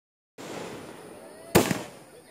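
Aerial firework going off: one sharp bang about one and a half seconds in, followed right after by a smaller pop, over faint background noise.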